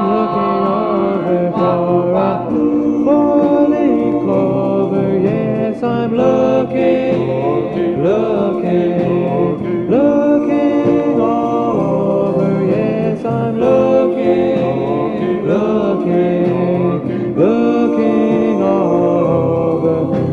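1961 doo-wop record: a vocal group singing close harmony in held chords, with no clear lead lyrics and sliding pitch changes every few seconds.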